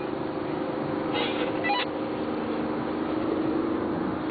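Steady engine hum and road noise inside a diesel car's cabin at highway speed, with a brief higher-pitched sound about a second and a half in.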